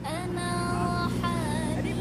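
A voice holding long sung notes, two of them in turn, the second wavering in pitch, over a steady low hum.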